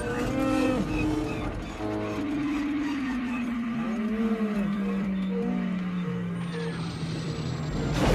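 Film soundtrack of the Millennium Falcon's hyperdrive failing to engage: a long falling whine that winds down over about five seconds, with Chewbacca's roars and the orchestral score underneath.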